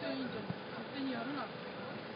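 Indistinct conversation among a few people, with street noise underneath.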